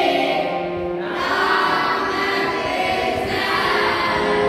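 A group of voices singing a devotional chant in long held notes, the melody moving to new notes about a second in and again a little past three seconds.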